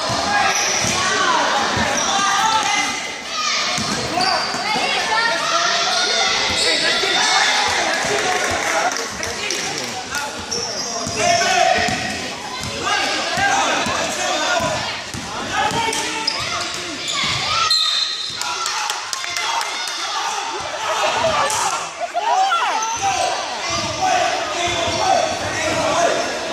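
A basketball being dribbled and bouncing on an indoor gym floor, with repeated sharp bounces, over continuous spectators' voices and shouts in a large gym hall.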